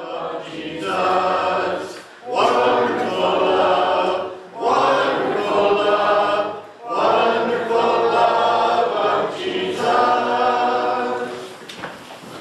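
Church congregation singing a hymn a cappella, no instruments, in phrases of about two seconds with short breaks between. The singing dies away near the end.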